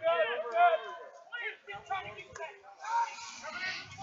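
Faint voices calling out on a lacrosse field, heard from a distance under the broadcast, with short shouted phrases coming and going.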